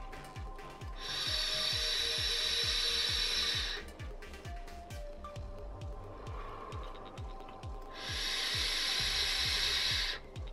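Loud, airy hiss of a HorizonTech Arctic V8 Mini sub-ohm tank being drawn on twice: air rushing through its open airflow past the firing 0.3-ohm coil. The first draw starts about a second in and lasts close to three seconds; the second starts about two seconds before the end. Background music with a steady low beat plays underneath.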